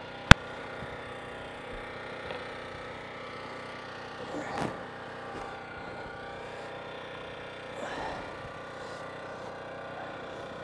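A freshly raised 2x4 wood stud wall being pushed upright into position: one loud, sharp knock about a third of a second in, then softer knocks and creaks of the timber near the middle and again near the end, over a steady low background noise.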